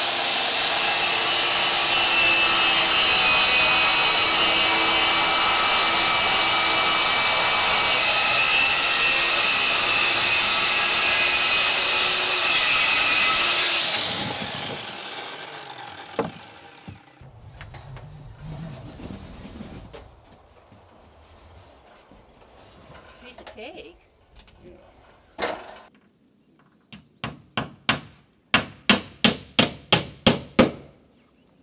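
DeWalt circular saw running through a sheet of OSB for about fourteen seconds, then winding down. Near the end, quick, regular hammer blows, about two or three a second.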